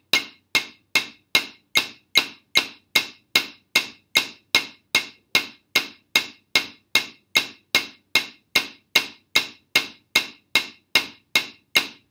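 Wooden drumsticks playing a single paradiddle (right, left, right, right, left, right, left, left) on a rubber practice pad set on a snare drum, in time with a metronome at 150. The strokes are sharp and evenly spaced, about two and a half a second.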